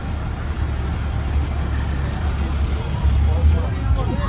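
Low, steady rumble of an idling Guatemalan chicken bus, a converted Blue Bird school bus, with faint voices of people around it.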